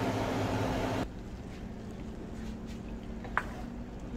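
Steady low mechanical hum of kitchen ambience, with a louder hiss over it that cuts off abruptly about a second in. A single sharp click near the end.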